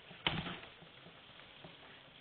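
One short, sharp knock about a quarter second in, fading quickly, then faint room tone.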